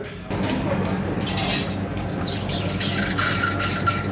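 Electric dough sheeter running with a steady hum as a ball of pizza dough is fed into its rollers, with light clatter around it; a thin steady tone joins in the last second.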